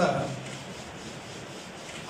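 A man's voice trails off at the very start, then a pause filled with a steady, even background hiss of room noise.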